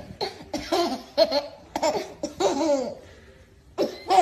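A man laughing in a string of short bursts that fall in pitch, breaking off about three seconds in before the laughter starts again near the end.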